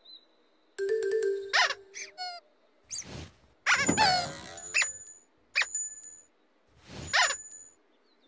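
Playful children's-show music and cartoon sound effects: a string of short, separate sounds about a second apart, several sliding up or down in pitch, some with steady high ringing notes.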